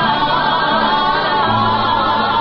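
Navarrese jota sung as a duet by a man and a woman, with wavering vibrato on long held high notes, accompanied by piano accordion and acoustic guitar.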